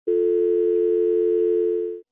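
Telephone ringing tone heard by the caller: one steady, unbroken beep of about two seconds that cuts off abruptly as the call is answered.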